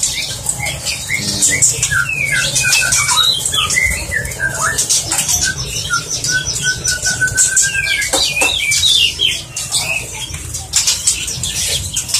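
Juvenile caged songbirds calling with short chirps and squawks. About halfway through comes a quick run of repeated even notes. Wing flutters and sharp clicks against the cage come in between, over a steady low hum.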